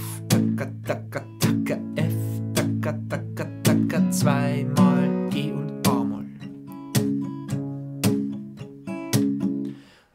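Capoed acoustic guitar strummed in a steady groove: bass note on the one, lightly palm-muted accented strokes on beats two and four, filled in with eighth-note strums, moving through a C, F, G, A minor progression. The strings are damped by the palm near the end and the sound stops.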